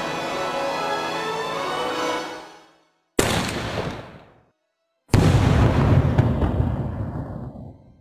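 Background music fades out, then a firework aerial shell is fired from its tube with a sharp report that dies away over about a second. About two seconds later the shell bursts in the sky with a louder, deeper boom that trails off over the last few seconds.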